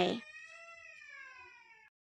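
A single long cat meow, sinking slowly in pitch and cut off abruptly near the end.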